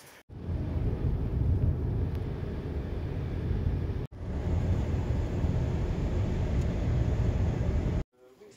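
Steady low rumble of road and tyre noise inside a moving car's cabin, broken once by a sudden cut about four seconds in before the same noise carries on.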